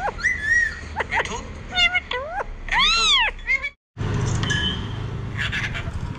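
Pet parakeet calling: a run of short, whining, cat-like calls, mostly quick upward sweeps, with one longer rising-then-falling call about three seconds in. The sound drops out briefly just before four seconds, then only fainter noise and a few clicks follow.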